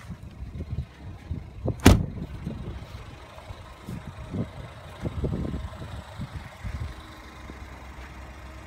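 A car door of a 2014 Ford Escape shutting with one loud thud about two seconds in, followed by a series of softer low thumps, over the SUV's engine idling with a steady low hum.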